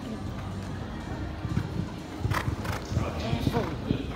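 A horse's hooves thudding on arena sand as it canters, with irregular hoofbeats growing louder from about a second and a half in.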